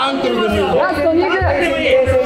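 Several voices shouting and talking over one another, calling out to the fighters during ground grappling.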